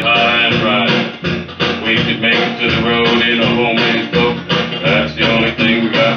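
Instrumental country music, led by guitar over a bass line, with a steady beat and no singing.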